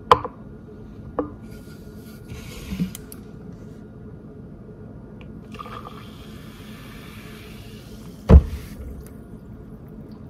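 Sparkling water poured from a plastic bottle into a plastic cup, running and fizzing for about three seconds. There is a sharp knock at the start as the cup is set on the wooden table, and a louder thud near the end as the bottle is put down.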